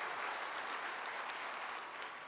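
A large seated audience applauding, the clapping easing off near the end.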